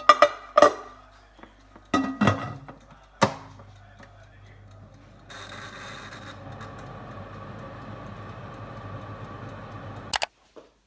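A metal cake pan clattering as it is set into a halogen countertop oven's glass bowl and the lid is put on, with several sharp knocks in the first few seconds. About five seconds in, the oven's fan starts and runs steadily with a low hum.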